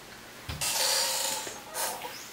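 A man's noisy breath close to the microphone: about a second of rushing air after a soft low bump, then a shorter breath near the end.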